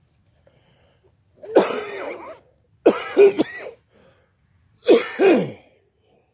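A person coughing in three harsh bouts, each about a second long, with short pauses between them.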